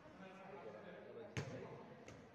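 A futsal ball kicked once, a single sharp thump about one and a half seconds in, over faint voices of players.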